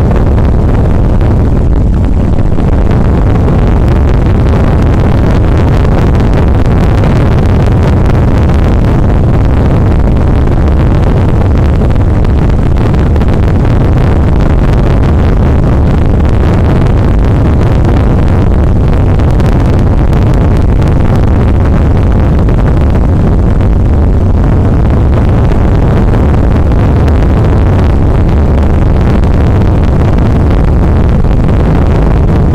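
Harsh noise wall: a dense, unchanging mass of distorted electronic noise, heaviest in the low end and held at a constant high level.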